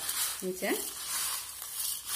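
Dry roasted grains and pulses being stirred and turned by hand in a steel bowl: a steady rustling, rattling hiss of the small hard pieces sliding over one another and the metal.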